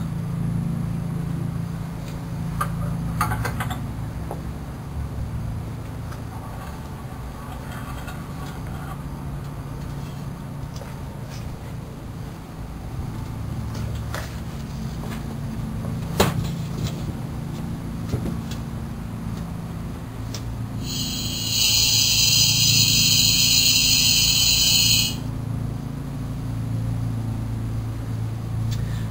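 Steady low hum with scattered light clicks and knocks of equipment being handled, and one sharp knock about halfway through. Near the end a loud, high-pitched tone sounds for about four seconds and cuts off suddenly.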